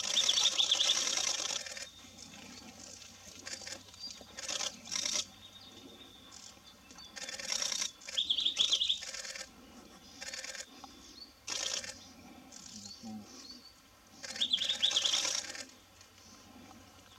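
Chin Hills Wren-Babbler singing: three loud song phrases of about two seconds each, roughly seven seconds apart, each with a rapid trill, and shorter, quieter notes between them.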